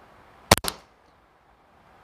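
A G&G Piranha MK1 gas blowback airsoft pistol, running on green gas, fires one shot about half a second in. It gives a sharp crack, with a second, quieter click close behind.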